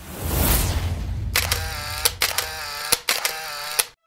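Title-card transition sound effect. A falling whoosh is followed by a bright jingle of pitched tones, cut by several sharp, shutter-like clicks, and it cuts off suddenly.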